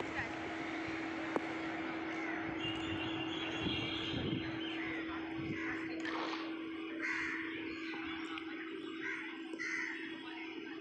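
Open-air cricket-ground ambience with distant voices and a steady low hum. A single sharp knock comes about a second and a half in, and several short, harsh bird calls follow in the second half.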